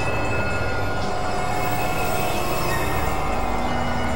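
Dense experimental noise-music collage of several tracks layered at once: a steady, loud wash of noise with sustained high drone tones held over it, close to a screeching-rail sound.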